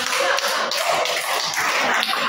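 A small group of children clapping, steady and continuous.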